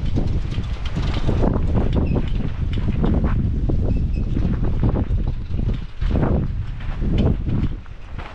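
Wind buffeting the camera microphone in a steady low rumble, with irregular crunching footsteps on dry desert gravel.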